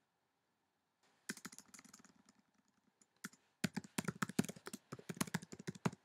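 Typing on a computer keyboard. A run of key presses comes about a second in, then a single tap, then a quicker, louder burst of typing that stops near the end.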